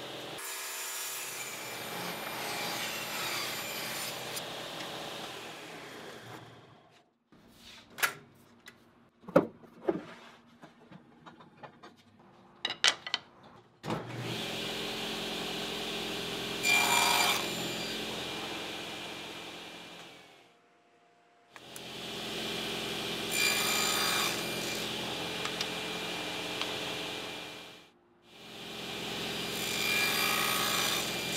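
Table saw running and ripping maple into thin strips. The saw dies away about six seconds in and a few sharp knocks follow, then the saw runs again with short bursts of cutting. It breaks off abruptly twice.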